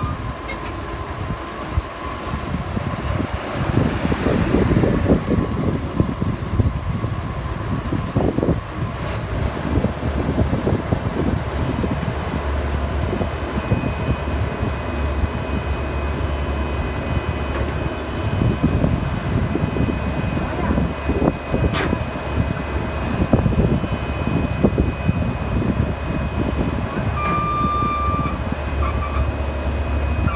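Diesel engine of a Mitsubishi asphalt paver running steadily under load as the machine climbs the ramps onto a low-loader trailer, with a deeper steady hum from about twelve seconds in. A short beep sounds near the end.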